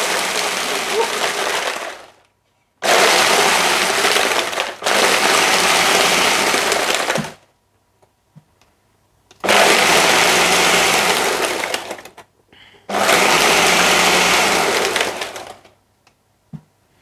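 Countertop blender crushing ice in liquid, run in four bursts of a few seconds each, stopping and restarting between them, as the ice is ground down to slush.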